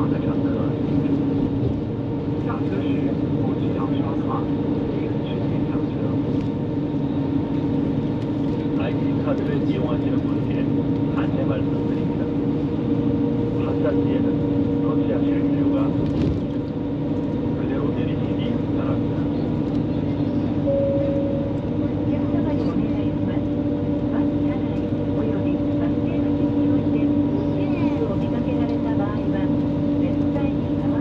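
Coach bus cabin noise while driving at speed: a steady engine drone and tyre and road noise heard from inside the bus, with small rattles and ticks.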